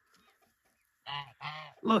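Domestic goose honking twice in quick succession, about a second in.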